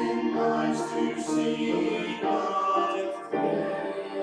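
A small choir of men's and women's voices singing held notes with piano accompaniment, a new phrase beginning a little after three seconds in.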